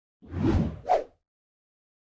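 Two quick whoosh sound effects, the second shorter and higher than the first.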